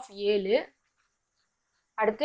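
A voice speaking for a little over half a second at the start, then silence.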